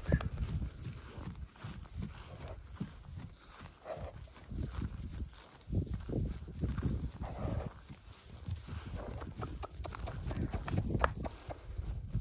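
Hoofbeats of a bay horse trotting loose on dry grass: a run of dull, uneven thuds.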